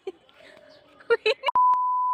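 A brief snatch of a voice, then about one and a half seconds in a click and a steady, single-pitched beep: the reference test tone that plays with TV colour bars.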